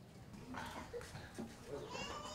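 Faint outdoor background with a distant high-pitched, wavering call near the end.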